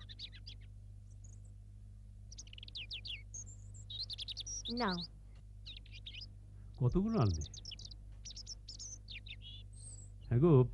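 Small birds chirping in short, high, repeated calls throughout, over a steady low hum. A brief voice sound about seven seconds in.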